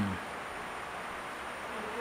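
A steady hissing buzz of background noise, with the tail of a woman's spoken word falling in pitch at the very start.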